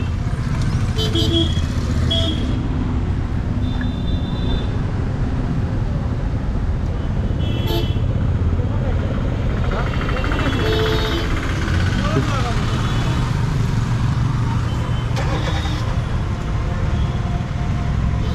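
Busy street traffic: a steady low rumble with several short vehicle horn toots, and people talking in the background.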